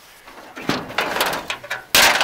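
Sheet-steel louvered hood side panel of a 1922 Ford Model T being lifted and folded open: metal rattling and scraping from about half a second in, ending in a loud clank.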